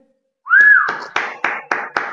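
A person whistles one note that slides up and then holds, followed by about five quick hand claps of applause.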